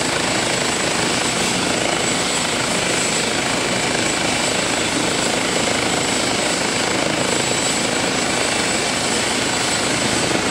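Eurocopter EC135 air-ambulance helicopter running steadily on the ground before lift-off, its turbines and main rotor making a dense, even noise with a fine rapid beating from the blades. A thin steady high whine runs over it.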